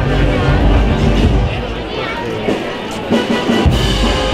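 Spanish processional wind band (banda de música) playing a slow march, with sustained band tones over a deep drum.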